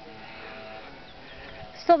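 Faint outdoor background, then near the end a woman calls out loudly, her voice wavering in pitch as she shouts for someone to stop.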